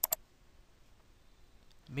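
Computer mouse button clicking: two short sharp clicks about a tenth of a second apart at the very start, as the Help button is clicked, followed by faint room tone.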